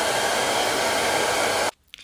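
Hair dryer running steadily while drying wet hair, an even rushing blow that cuts off abruptly near the end.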